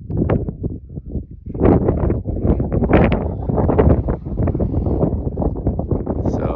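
Wind buffeting the phone's microphone on an exposed mountain summit, a loud uneven rumble with irregular knocks and rustles as the phone is handled and turned around.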